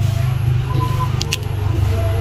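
A steady low rumble, with a couple of faint, short, sharp clicks about a second in.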